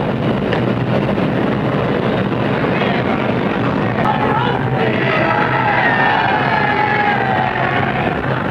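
A steady, noisy street din of crowd and traffic on old newsreel sound, joined about halfway by music with wavering, sliding pitch.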